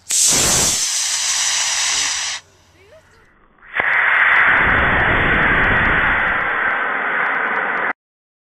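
Model rocket motor igniting with a loud rushing hiss that lasts about two and a half seconds. After a short lull, a second long rushing hiss with faint ticking starts suddenly and cuts off abruptly.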